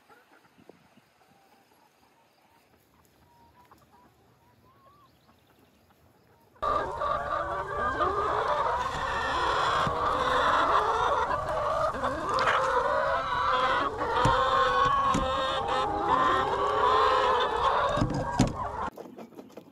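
A flock of laying hens clucking, many birds at once in a continuous, loud chorus that starts suddenly about a third of the way in, with a few sharp clicks among it. Before that, only faint quiet with a thin distant bird call.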